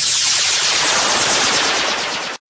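Loud, steady burst of dense hiss-like noise with no beat or melody: a transition sound effect between two songs in a music mix.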